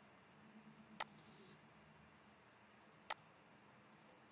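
Two sharp computer mouse clicks about two seconds apart, over near silence.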